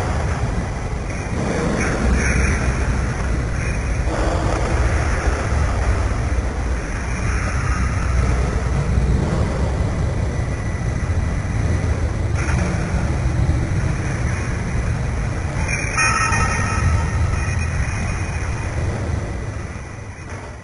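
A steady, loud, deep rumbling noise, with a brief cluster of tones about 16 seconds in. It starts fading right at the end.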